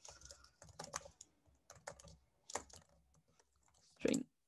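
Faint computer keyboard typing: a scattered run of single keystrokes as a line of Java code is typed.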